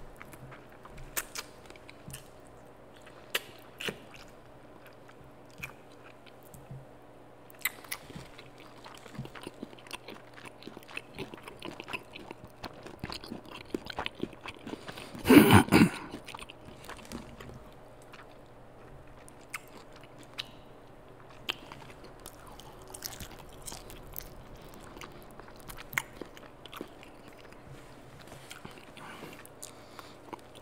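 Close-miked chewing and biting of crisp fried food: a scatter of short wet clicks and crunches, with one much louder crunch about halfway through.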